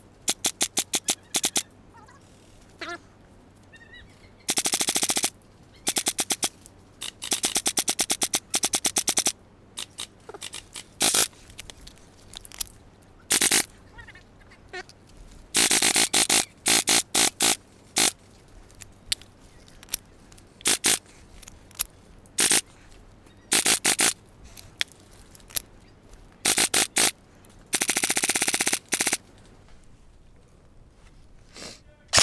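Airsoft electric rifle (a G&P MK18 Mod 1 replica) firing in repeated bursts of rapid clicks. Some bursts are brief and several run for a second or two.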